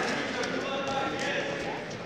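Voices calling out in a large, echoing gym hall, with a few short dull thuds on the wrestling mat.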